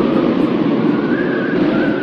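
A loud, steady rushing noise with a faint high whine above it, swelling in just before and fading out near the end.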